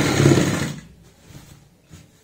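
Sewing machine running steadily as it stitches a seam through cloth, stopping abruptly just under a second in; a couple of faint clicks follow.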